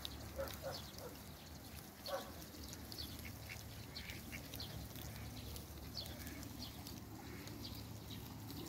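Muscovy ducks foraging and giving a few short calls, the loudest about two seconds in, while many short high chirps are heard throughout.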